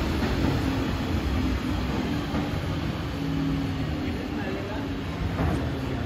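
Diesel engine of a Volvo rear-loader garbage truck running at low speed as it moves slowly along the street: a steady low hum that rises and falls slightly in pitch.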